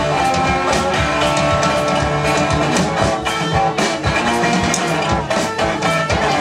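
Live rock music with no vocals: a resonator guitar strummed hard, with a drum kit keeping a steady beat.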